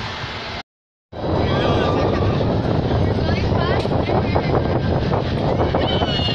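Wind rushing over the phone's microphone, a loud steady rumble that cuts out completely for half a second near the start.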